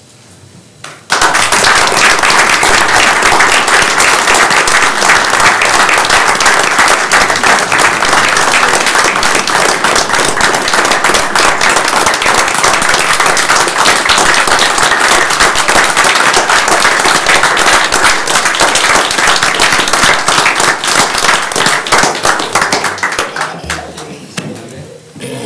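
A roomful of people applauding: the clapping starts suddenly about a second in, stays loud and steady, and dies away near the end.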